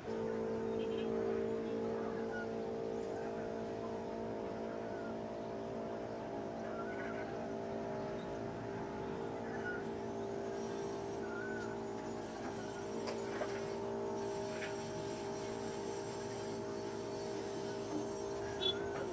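A steady drone of several held tones that starts abruptly and holds at an even pitch throughout, with short faint chirps now and then.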